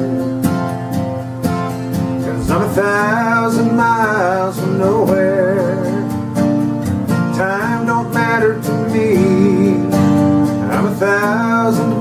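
Steel-string acoustic guitar strummed steadily in a country style. Over it, three phrases of a wordless, wavering melodic line come in and drop away.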